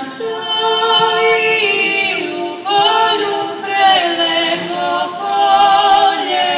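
Women's folk vocal group singing unaccompanied in several-voice harmony through stage microphones, holding long notes, with a short break and a new phrase about halfway through.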